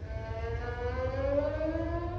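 Violin playing a slow upward slide in pitch over about two seconds, with a lower note gliding up alongside it.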